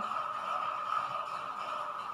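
Room tone: a steady high-pitched whine over a faint hiss, with no other events.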